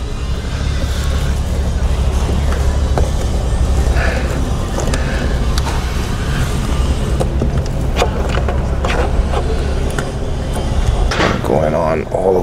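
Plastic intake tubing and a silicone coupler being pushed and clipped into place by hand: scattered clicks and knocks over a steady low rumble.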